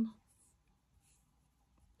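Near silence after a spoken word trails off at the start, with faint brief rustles of hands handling a wooden Tunisian crochet hook and thick velour yarn.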